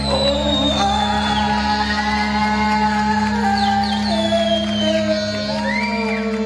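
A live rock band playing electric guitars, with a steady low drone held throughout, sustained notes over it, and high notes that slide downward in pitch.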